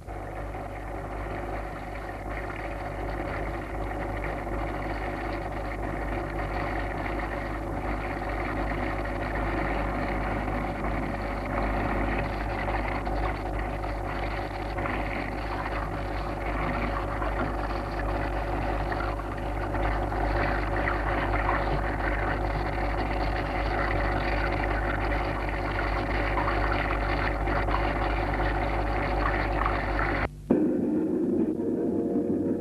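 A dense, steady, engine-like drone of musique concrète, many held tones layered over a deep rumble, slowly growing louder.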